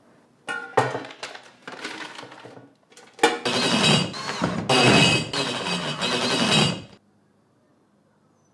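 A string of knocks and clinks against metal and tile, then a power drill running for about four seconds as a screw is driven into a grab-rail flange. It cuts off suddenly.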